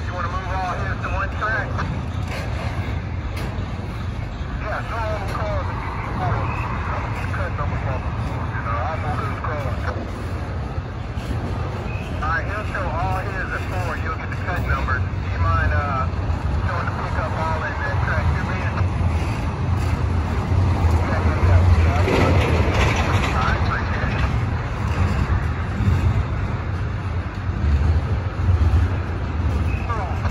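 Double-stack intermodal container train rolling past: a steady low rumble of wheels and cars on the rails, swelling a little about two-thirds of the way through.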